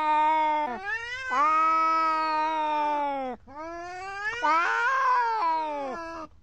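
Cats yowling at each other in a standoff: three long, drawn-out, wavering calls, the last swelling louder and rougher near the end. It is a territorial threat between cats.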